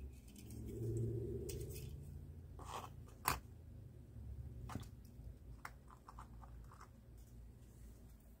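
A few faint, sharp clicks and taps as a small die-cast car is handled and set down on a diorama surface, the loudest about three seconds in, over a low steady hum.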